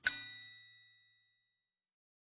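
A single bright chime struck as the final note of a children's song, ringing out and fading away over about a second, then silence.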